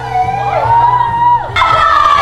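Music playing while young women whoop and shout in long, high held calls. A fresh, louder call breaks in near the end.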